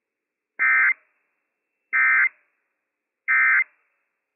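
Emergency Alert System (SAME) end-of-message data bursts: three short electronic tone bursts about a third of a second each, evenly spaced about a second and a half apart, with silence between them. They mark the end of the alert broadcast, here a Required Weekly Test.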